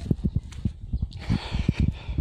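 Footsteps of someone walking over dry leaves and grass, with quick low thumps from the handheld phone as it is carried and a short rustle in the second half.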